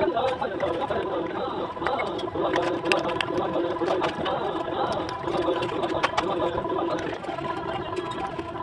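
Bricklaying work with a steel trowel: scattered sharp clinks as bricks are tapped and set in mortar, over men's voices talking.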